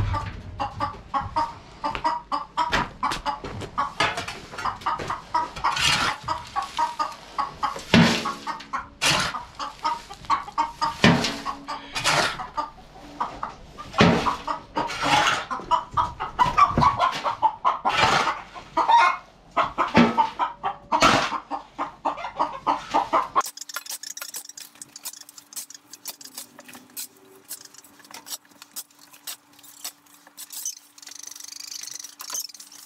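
Chickens clucking close by, mixed with a shovel scraping and scooping feather-strewn litter off a hard coop floor in quick, uneven strokes. About 23 seconds in the sound drops suddenly to a much quieter stretch of faint ticking over a low steady hum.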